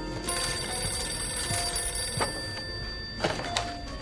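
Desk telephone bell ringing over quiet film score, with a couple of sharp clicks near the end as the handset is picked up.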